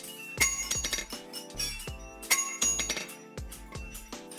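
Hand hammer striking hot iron on a railway-rail anvil: repeated sharp, ringing metallic clinks, the loudest about half a second in and a little past the middle, over background music.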